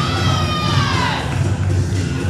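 Wrestling entrance music with a heavy, steady bass beat; in about the first second a high siren-like tone slides down in pitch.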